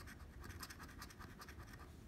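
A coin scraping the latex coating off a scratch-off lottery ticket: faint, quick, repeated strokes.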